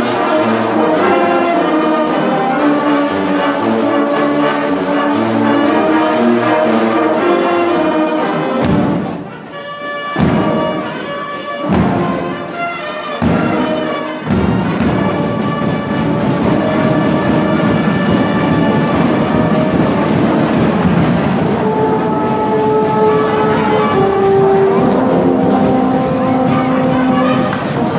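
School marching band playing: a brass section with sousaphones sustaining chords over percussion. From about nine seconds in, the music breaks into a run of sharp accented hits about a second and a half apart, with short gaps between them, before the full band resumes.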